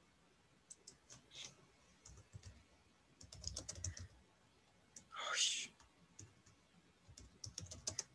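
Faint computer keyboard typing and mouse clicks: scattered single clicks, with quicker runs about three seconds in and again near the end. One louder, short hissing sound about five seconds in.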